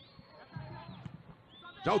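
Faint football-stadium ambience, with a faint distant voice about half a second in and a faint high steady tone that stops about a second in.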